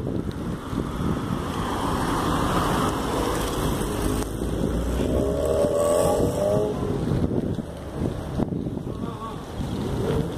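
Wind rushing over the microphone of a camera riding along on a bicycle, with road noise and passing motor traffic mixed in.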